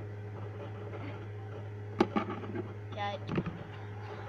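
A steady low hum, broken about two seconds in by a sharp click, followed by short bits of a voice and a knock a little after three seconds.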